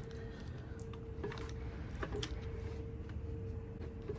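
A faint steady hum with a few light clicks and taps as hands handle a motorcycle battery in its tray.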